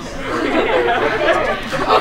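Indistinct chatter: several young people talking over one another in a room.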